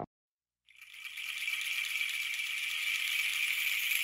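A percussion shaker rattling in a steady, continuous roll that fades in about a second in, after a brief silence, opening a samba-enredo recording.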